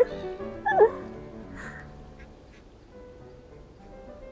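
A young woman's brief laugh about a second in, then soft background music with long held notes.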